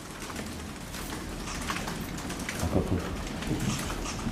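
A rapid, irregular patter of clicks from press camera shutters, with rustling as papers are handled and a low thump nearly three seconds in.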